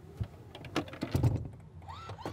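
A few light clicks and knocks with a soft thump a little past the middle, from a gloved hand working the power-fold seat toggle switches in the cargo area of a GMC Yukon.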